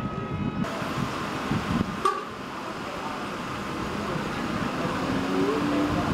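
Street noise of road traffic, with voices at first and one sharp knock about two seconds in. A steady held tone with a short rise comes near the end, like a car horn or engine.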